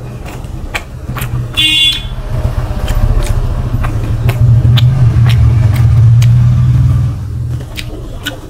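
A motor vehicle's engine rumbles past outside, swelling over several seconds and fading away near the end, with a short horn toot about one and a half seconds in. Small wet mouth clicks from eating are heard throughout.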